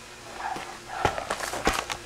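Handling noise: rustling and a quick run of light knocks and clicks as the camera is moved and set down, the sharpest about a second in and just before the end.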